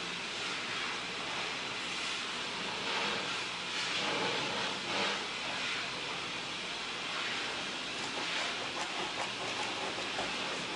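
A steady, loud rushing hiss, even and unbroken, like a machine running.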